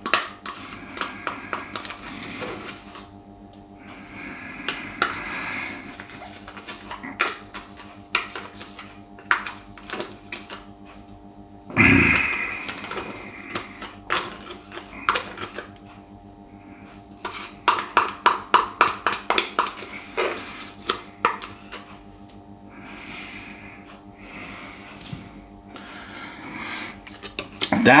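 Kitchen utensil clicking and scraping against containers and a stainless steel tray as dollops of soft white topping are spooned onto kebab meat. There is one louder knock near the middle and a quick run of taps, about four or five a second, a little past halfway, over a faint steady hum.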